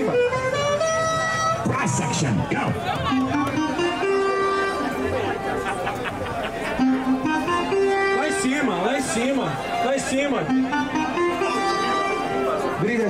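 A rap instrumental beat plays over a sound system as a battle round starts. Its melody is made of held, stepped notes in a phrase that repeats about every four seconds, with crowd voices over it.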